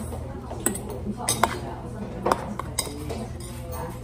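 A metal spoon clinking and scraping against a stainless steel bowl while eating, with about five sharp clinks in the first three seconds.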